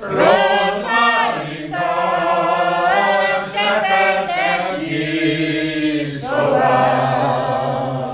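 A group of elderly men and women singing a Transylvanian Hungarian village folk song unaccompanied, in long held phrases. A new phrase begins right at the start after a breath, with short breaks about three and a half and six seconds in.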